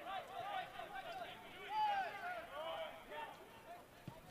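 Faint on-field voices: soccer players shouting and calling to each other during play, a quick run of short calls, one a little louder near the middle.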